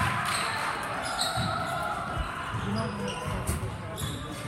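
A basketball being dribbled on a hardwood gym floor, a few low bounces, over the chatter of a crowd in the hall. About a second in come a couple of short high squeaks, sneakers on the floor.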